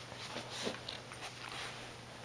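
Keeshond dog snuffling right at the microphone: a few short sniffs, the loudest about two-thirds of a second in.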